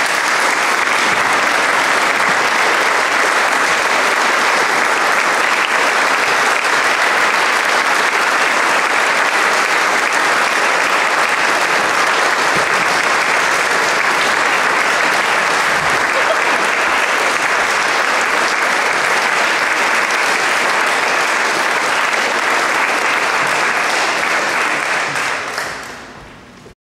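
Audience applauding steadily after the music stops, dying away near the end.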